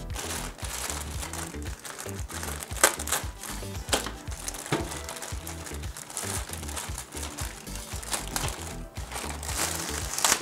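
Clear plastic wrapping crinkling as hands handle and pull it off a car speaker's grille, with sharp crackles now and then. Background music with a steady low beat plays under it.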